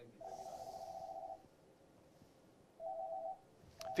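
Telephone ringing with an incoming call: an electronic ring of two steady mid-pitched tones, one ring about a second long, then a shorter one near the end.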